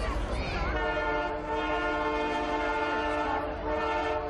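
Canadian Pacific Holiday Train locomotive's air horn sounding one long blast, a steady chord of several notes, starting about a second in and stopping just before the end, over the rumble of the passing train. Crowd voices are heard before the blast.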